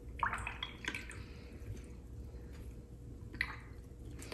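Soft wet swishes and dabs of a paintbrush working in water and wet gouache: a few short strokes near the start, one about a second in and one near the end, over a faint steady hum.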